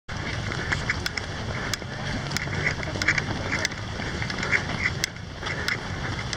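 Footfalls of a crowd of runners on an asphalt road, heard as irregular sharp taps a few tenths of a second apart over a steady low rumble from a camera carried along at a run.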